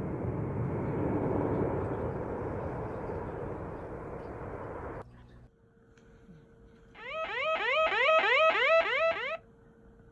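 Edited intro sound effects: a loud rumbling noise that cuts off abruptly about five seconds in, then, after a short gap, a quick run of rising electronic pitch sweeps, about four a second, for two seconds over a faint steady tone.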